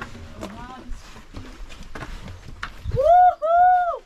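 Footsteps and trekking-pole taps on a rocky trail, a few scattered clicks. About three seconds in comes a high-pitched voice sound in two drawn-out syllables, each rising and falling in pitch, much louder than the steps.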